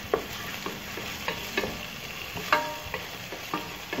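Sliced onions sizzling in oil in a non-stick pan, stirred with a wooden spatula that scrapes and taps the pan about twice a second.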